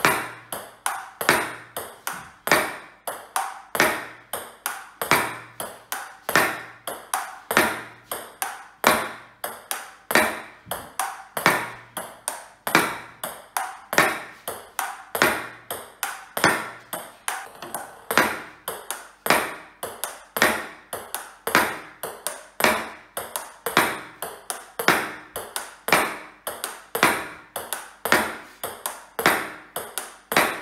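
Celluloid-type table tennis ball in a continuous solo rally against an MDF rebound backboard. Bat strikes, bounces on the laminate table and hits on the board make a steady string of sharp clicks, several a second, the loudest about once a second.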